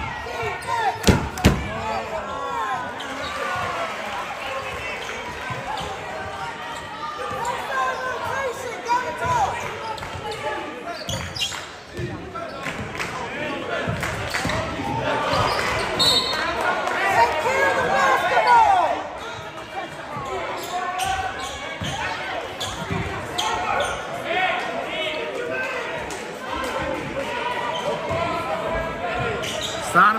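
Basketball bouncing on a hardwood gym court, with a few sharp bounces near the start, over voices of players and spectators echoing in a large gym.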